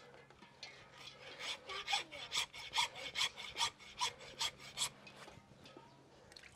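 Hand saw cutting through the horn bone at the base of a calf's horn during dehorning: quick rasping back-and-forth strokes, about four a second, getting louder and then stopping about five seconds in.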